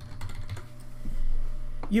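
Computer keyboard keys clicking as a short word is typed, a quick run of keystrokes.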